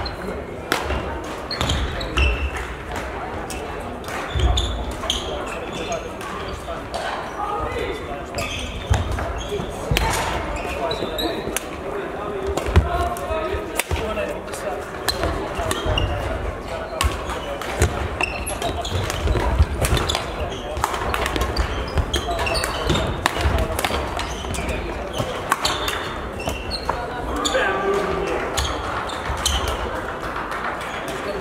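Badminton play in a large sports hall: repeated sharp racket strikes on shuttlecocks and thuds of footwork on the court floor, from this and neighbouring courts, over a background of indistinct voices.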